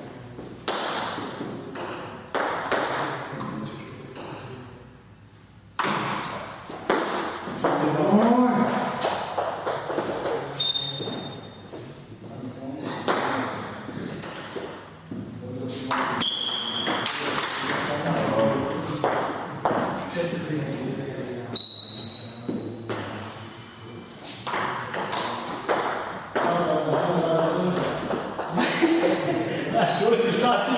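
Table tennis ball clicking back and forth between the bats and the table in rallies, many quick sharp ticks in a row.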